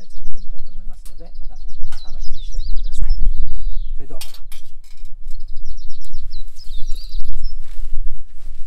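Small birds chirping in quick high trills, in two spells, over a loud low rumble of wind on the microphone, with a few sharp clicks.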